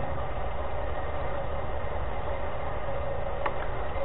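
Steady low hum with hiss, the background noise of an old lecture recording heard in a pause in the speech, with one faint tick near the end.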